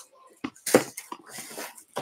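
Small plastic doll accessories being handled: a few light clicks and rustles, with one sharper knock about three quarters of a second in.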